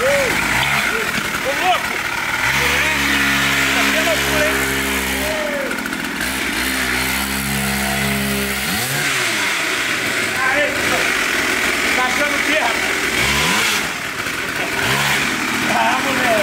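Mini motorcycle's small engine running as it is ridden, revving up and down so its pitch rises and falls again and again, held steadier for several seconds in the middle.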